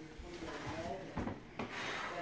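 A wooden piano bench rubbing and scraping as it is moved into place and sat on, with a short knock just past a second in.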